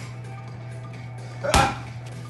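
A single punch from a 20 oz boxing glove landing on a handheld punch shield, one sharp smack about one and a half seconds in, over a steady low hum.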